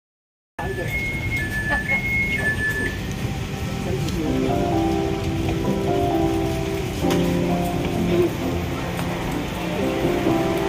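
A two-tone electronic chime alternating high and low about five times over the first two seconds, typical of a train's door chime, over the rumble and chatter of a crowded train carriage. From about four seconds in, background music plays over it.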